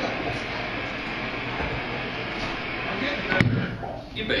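Indistinct chatter of a bar crowd over a steady noisy background, with one sharp thump about three and a half seconds in.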